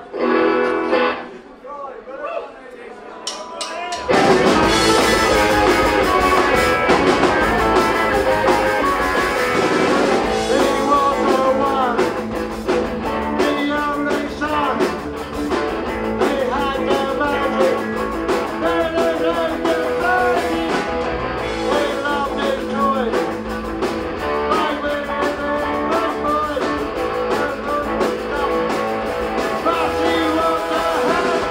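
Live punk rock band starting a song about four seconds in: electric guitars, drum kit and a male singer on microphone, played loud. A few seconds of talk come before the band starts.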